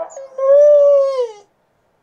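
A howl: one long drawn-out call, rising slightly, then sagging and dropping off before it stops, about a second and a half in. The tail of a shorter wavering call runs into its start.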